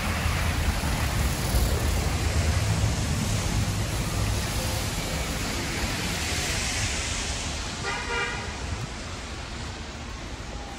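Street traffic on a wet, slushy avenue: a city bus and cars passing with a low rumble and steady tyre hiss, louder in the first half. A short car horn toot sounds about eight seconds in.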